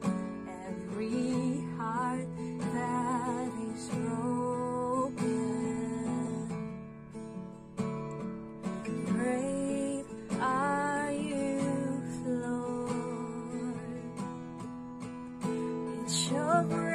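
Acoustic guitar with a capo, strummed steadily to accompany a man singing a slow worship song with vibrato on held notes.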